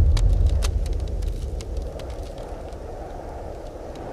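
Deep rumble that fades out over a few seconds, with scattered sharp crackles in its first half: an added title-card sound effect, like ice cracking.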